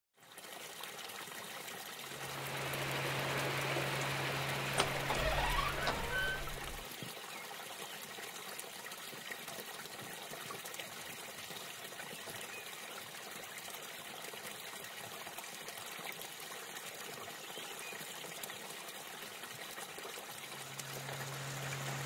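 Steady trickle of running water. A low, steady hum joins in about two seconds in, stops around seven seconds, and comes back near the end.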